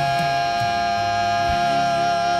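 Gospel vocalists holding one long sustained note over a backing track with a moving bass line.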